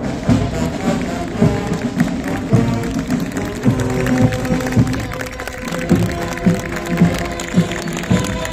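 Brass marching band playing live: sousaphones, trumpets and other brass over a steady beat of about two a second.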